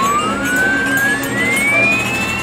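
A single pure tone gliding steadily upward in pitch, over a steady background hiss and low hum.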